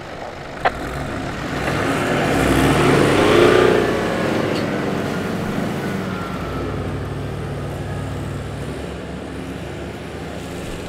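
Four-wheel-drive engines revving hard during a snatch-strap recovery up a soft sand hill. The engine sound rises to a peak about three and a half seconds in, then eases to a steady drone as the freed vehicle climbs away. A brief sharp click comes just before the first second.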